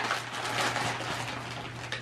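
Gift-wrapping paper rustling, crinkling and tearing as a present is unwrapped by hand, in a run of irregular crackles.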